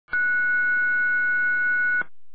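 Emergency dispatch alert tone: one steady, high-pitched tone held for about two seconds over a dispatch radio channel, the signal that alerts a fire station before a call is read out.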